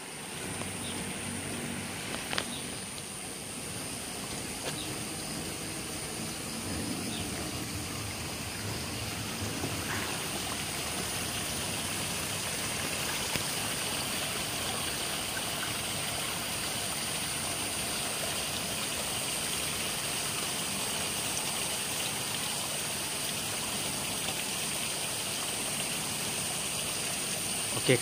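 Steady running water from rainwater draining off the rain-soaked landslide slope. A thin high hiss holds steady above it throughout.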